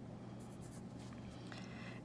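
Faint scratching of a coloured pencil on lined paper, writing a single digit.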